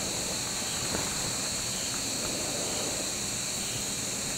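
Steady chorus of night insects, crickets or similar, chirping in a continuous high drone over a faint background hiss, with one small click about a second in.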